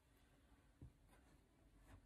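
Near silence: room tone with faint handling of crocheted yarn fabric, including a soft tick a little under a second in.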